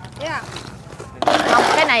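Live apple snails clattering against a plastic scoop and basket as they are scooped up, starting suddenly about a second in, with a woman's voice.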